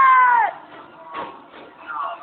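A high, drawn-out cry with a clear pitch that holds and then falls away, ending about half a second in. A single knock follows about a second in, over a quieter background.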